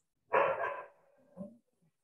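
A single short bark-like animal call about a third of a second in, with a faint short sound about a second later.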